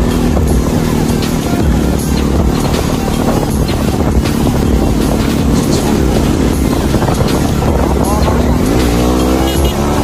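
Motorcycle engine running while riding, its note rising near the end as the revs climb.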